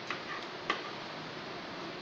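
Two light clicks about half a second apart, the second one louder, over a steady background hiss.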